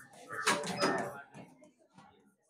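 Indistinct talking in a small room, with a short sharp click or knock about half a second in.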